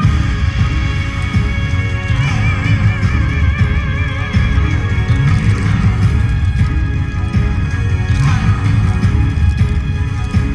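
Yosakoi dance music played loud, with a heavy, steady beat; about two seconds in, a held melody line with a wavering pitch comes in over it.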